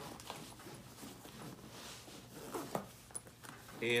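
Zipper on a fabric backpack compartment being pulled closed, a fairly faint zipping mostly around the middle.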